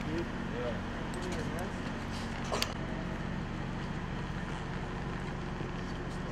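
Fire engine's diesel engine idling with a steady low hum, and a single sharp click a little over two seconds in.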